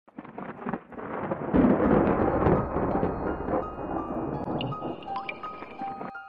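Channel logo intro music sting: a noisy, rumbling swell with a deep boom about a second and a half in, slowly fading as high sustained keyboard-like notes come in over the last couple of seconds.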